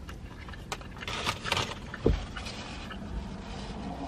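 A person chewing a bite of burger with closed-mouth clicks and smacks, a few short rustles about a second in, and a dull thump just after two seconds.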